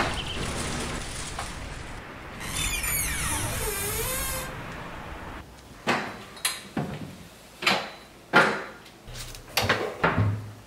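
Luggage and door handling sounds: a sharp click at the start, a scraping, gliding stretch in the middle, then a quick run of sharp knocks and clunks in the second half as a suitcase with a telescoping handle is handled and lifted.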